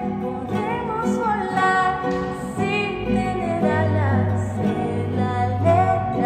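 A woman singing a Spanish-language pop ballad, accompanied by an acoustic guitar.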